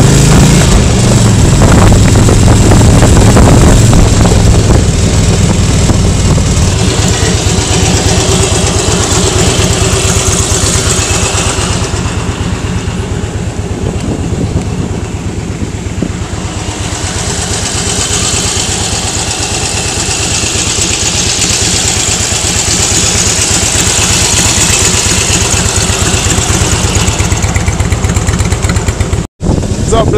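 Touring motorcycle engine running under way, with a steady low rumble and wind noise on the rider's microphone. It eases off for a few seconds midway and picks up again, and the sound cuts out briefly near the end.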